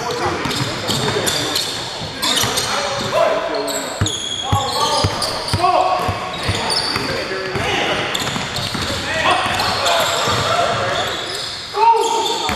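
Basketball dribbled and bounced on a hardwood gym floor in a pickup game, with short sharp knocks throughout and high sneaker squeaks, over players' shouts echoing in the large hall.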